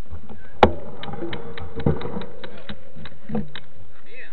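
Mountain bike rolling on pavement, heard through a camera mounted near its front wheel: a run of quick clicks and rattles, with a sharp knock about half a second in and another near two seconds.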